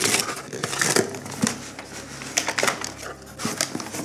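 White paper wrapping being ripped and torn off a taped cardboard box, a run of irregular crackling and rustling with small clicks as the box is opened.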